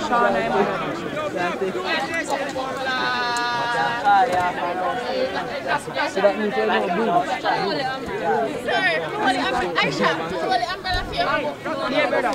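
Several people's voices chattering and calling out over one another, with one drawn-out shouted call about three seconds in.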